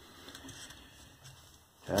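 Quiet room tone in a pause of talk, with a few faint ticks of hands handling a drone antenna; a man's voice starts again right at the end.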